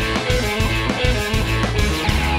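Live rock band playing: electric guitar over a drum kit, with a heavy low end and a steady beat.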